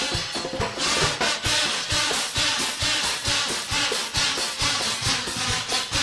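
A carnival murga's drum section, bass drum and snare, playing a steady march beat, with the crowd clapping along.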